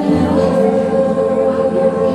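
Music with choir singing in long held notes.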